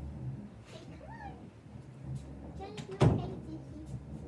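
Muffled voices in the background, then a single sharp thump about three seconds in, the loudest sound here.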